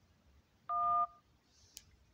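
Smartphone dial-pad touch-tone for the 1 key: a single two-note beep about a third of a second long, selecting option 1 in an automated phone menu to reach a customer service representative.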